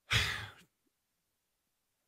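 A man sighs once, a short breathy exhale of about half a second, at the start.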